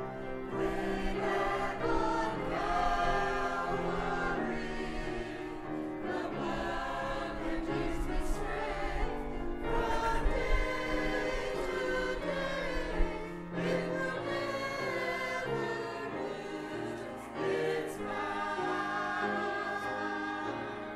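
Small mixed choir of women and men singing together.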